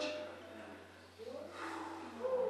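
A short pause in the singing, filled by a faint, breathy intake of air and a few soft gliding voice sounds.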